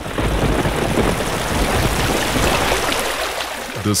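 Heavy rain falling, a steady dense hiss with a low rumble underneath.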